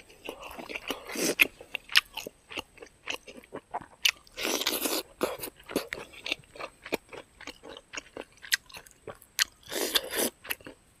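Close-miked chewing of a mouthful of smoked pork and rice: a run of small wet crunches and mouth clicks, with a longer, louder rush of noise about halfway through.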